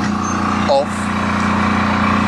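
An engine running steadily, a constant low drone.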